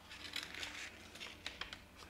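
Faint rustling of a piece of patterned paper packaging being handled and positioned, with a few light crackles scattered through.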